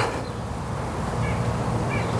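Steady outdoor background noise with a low rush, opening with a brief click and carrying a couple of faint bird chirps about halfway through and near the end.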